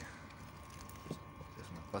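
Quiet room tone with a faint steady hum and one brief faint sound about a second in.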